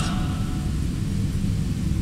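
Steady low rumble of background room noise in a large hall, with no speech or distinct events.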